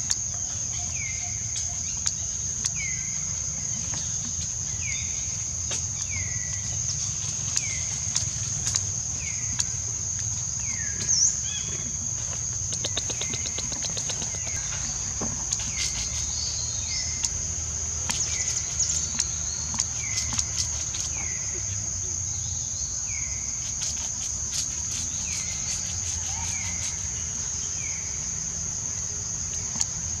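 Steady high-pitched drone of crickets or cicadas, with a short falling chirp repeated a little more than once a second and scattered clicks, some in quick runs in the middle.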